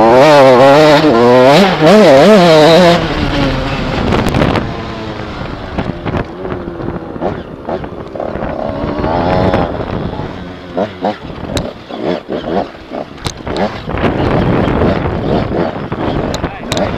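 Mini-enduro motorcycle engine heard on board, revving hard with its pitch wavering quickly up and down for about three seconds. It then runs quieter and unevenly on and off the throttle, with scattered sharp knocks in the second half.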